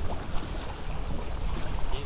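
Wind buffeting the microphone over choppy water lapping against the rocks of a jetty: a steady low rumble with a faint wash of water.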